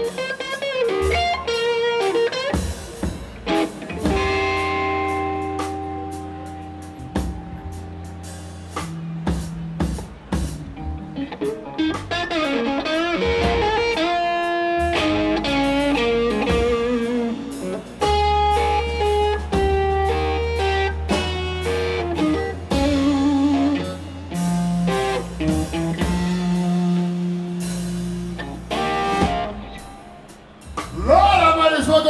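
Live blues band playing an instrumental passage: electric guitar solo with bent, wavering notes over bass guitar and drum kit. The guitar is played through a Marshall amp.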